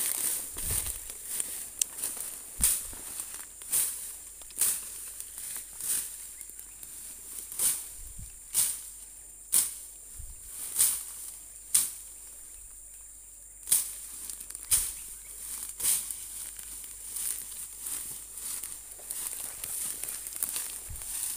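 Machete slashing through dense resam fern and undergrowth: a sharp swish-and-crunch about once a second, pausing for about two seconds a little past the middle.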